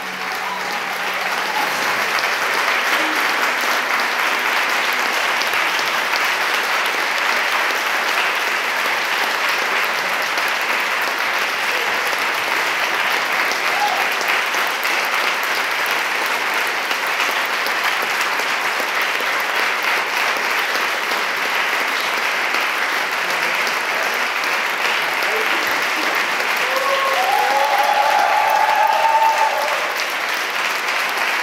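Audience clapping steadily and densely, swelling in over the first couple of seconds as the music ends. A few voices call out above it near the end.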